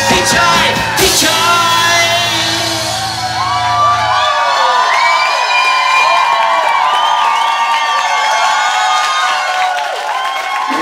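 A rock band's live ending: final hits and a held closing chord that cut off about four seconds in. The club audience then cheers and whoops loudly.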